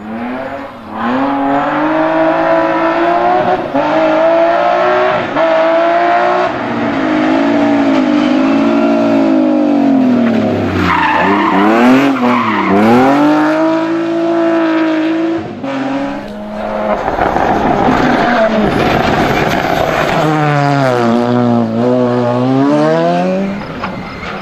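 Rally cars at full throttle on a tarmac stage, passing one after another. Engines rev hard and drop through gear changes, with the revs falling and climbing again about halfway through as a BMW E30 slides through a hairpin with tyre squeal.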